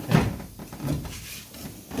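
Knocks and scuffing as a person squeezes head-first over a golf cart's seat, brushing against cardboard and wooden body panels. The sharpest knock comes just after the start.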